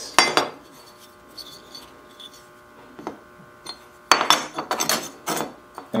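Thin aluminum plates and metal parts clinking and clattering as they are handled and set down on a wooden workbench: a sharp clatter just after the start, a few faint taps, then a quick run of clinks about four seconds in.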